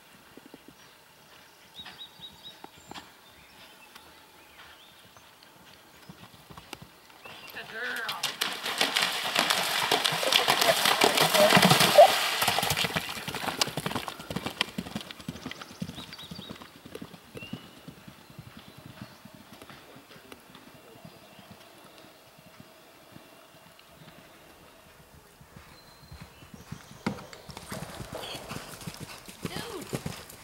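A horse galloping on turf: rapid hoofbeats swell loud as it passes close, peak about 12 seconds in and fade away. Hoofbeats build again in the last few seconds as a horse approaches.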